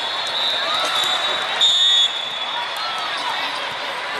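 Busy volleyball tournament hall: many voices, a ball bouncing and other small impacts from the courts. A referee's whistle blast of about half a second, a little after the middle, is the loudest sound.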